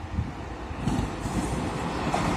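Electric locomotive hauling passenger coaches approaching on the rails, its running and wheel noise growing steadily louder.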